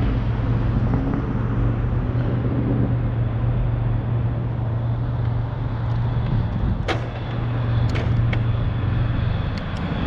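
Steady low engine hum that holds the same pitch throughout, with a few sharp clicks about seven seconds in and again near the end.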